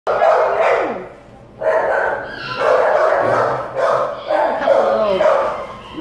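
Dogs barking in a shelter kennel block, loud stretches of barking that run together with short breaks, echoing off the hard kennel walls.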